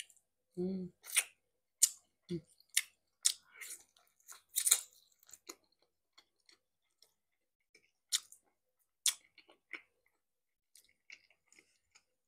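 Close-miked mouth sounds of someone eating pork ribs: wet chewing and lip-smacking clicks, thick in the first half and sparser later, with a short low hum about a second in.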